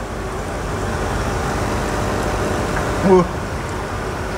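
Steady background noise: a low hum under an even rushing haze, with one short spoken word about three seconds in.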